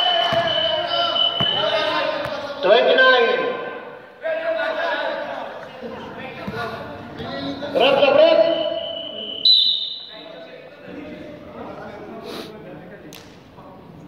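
Men's voices calling out across a large gym during a basketball game, dying down after about ten seconds. A basketball bounces on the court a couple of times near the end.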